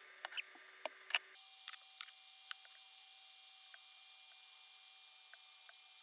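Quiet room tone with scattered faint clicks and taps, the loudest about a second in, then fewer and fainter ticks.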